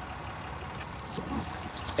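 Ram 2500's 6.7-litre Cummins turbo-diesel idling steadily, a low, even running sound heard from the open driver's door.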